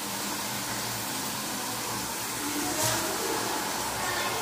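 Steady low sizzling hiss from spiced vegetables frying in an aluminium pressure cooker as raw rice is stirred in with a wooden spatula, with a faint click a little before three seconds in.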